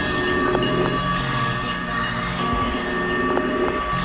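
Experimental electronic music: a dense low drone under several sustained high tones and a few scattered clicks, with a rumbling, squealing texture much like a train.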